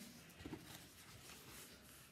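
Near silence: faint handling of a mounted cross-stitch piece being lifted, with a soft knock about half a second in.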